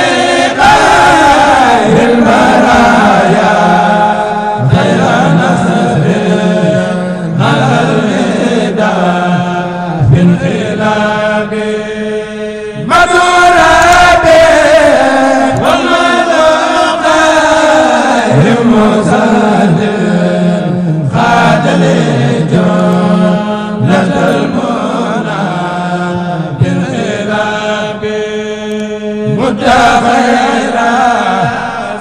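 A man chanting a devotional song solo into a microphone, in long melismatic phrases that slide down in pitch, over a steady low held note.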